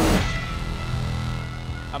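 Suspense music for a vote reveal: a sharp hit at the start, then a low held drone.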